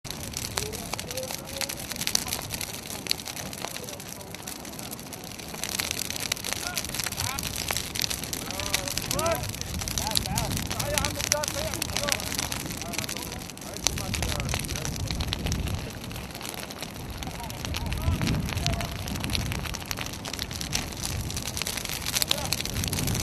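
An open fire crackling steadily, with stretches of low rumble and faint voices in the background.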